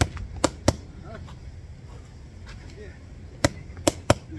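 Boxing gloves smacking focus mitts during pad work: two sharp hits a quarter-second apart about half a second in, then another quick pair near the end, a one-two combination each time.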